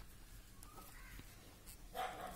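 Near silence, with one faint bird call a little over half a second in.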